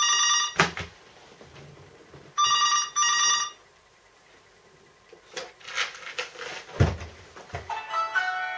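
Mobile phone ringing with an old-style double ring: two short rings, a pause of about two seconds, then two more. Then comes quieter rustling and a single low thump as the phone is handled.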